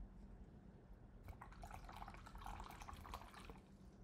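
Faint splashing of a watercolour brush being rinsed in a jar of water, a couple of seconds of quick little splashes and taps starting just over a second in.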